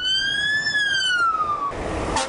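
Fire engine siren giving one wail that rises and then falls away, followed near the end by the noise of the truck going past.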